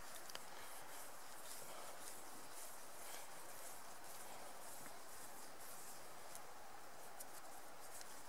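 Faint steady outdoor background hiss with a few soft ticks and light rustles as a thin cord is wound around the fingers by hand.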